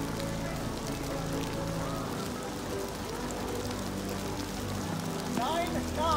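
Steady rain falling, with a low steady hum beneath it. A voice begins near the end.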